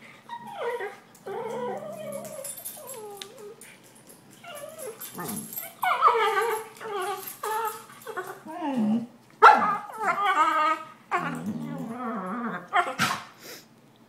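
Two puppies play-fighting, with a run of high, bending whines and yips in short bursts. The loudest bursts come around the middle and about nine and a half seconds in.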